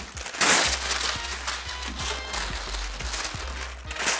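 Baking (parchment) paper being handled: a loud burst of paper rustling about half a second in, then light crinkling and small clicks as it is laid over a baking tray, with soft background music.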